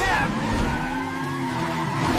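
Car tyres skidding and squealing in a hard emergency stop, a cartoon sound effect that starts suddenly and carries on as a held screech.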